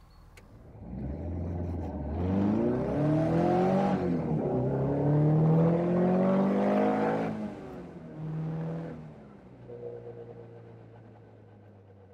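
Caterham 310S's four-cylinder Ford Sigma engine, fitted with a lightened flywheel, accelerating hard. The revs climb, dip briefly at a gear change about four seconds in, then climb again. The throttle lifts, there is a short further burst, and it settles to a lower steady note that fades near the end.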